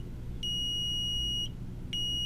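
Arcom Navigator Plus leakage meter's beeper sounding its three-beep buffer alert: long, steady high-pitched beeps about a second each, with one whole beep in the middle and the next starting near the end. The alert means the meter is buffering data because its Wi-Fi or server connection is lost, with 15 minutes of buffer space left.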